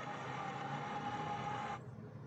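Audio of a satellite TV broadcast playing through the TV's speaker: a steady, noisy sound with a held tone. It cuts off suddenly near the end as the receiver changes channel, leaving a faint hiss.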